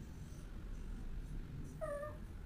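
A pet's short whining call near the end, pitched with a slight downward fall, over a low steady room rumble.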